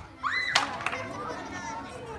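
A short shout and then a sharp smack about half a second in, as a taekwondo kick strikes the target held out by the instructor. A lighter knock follows just after, over children's chatter.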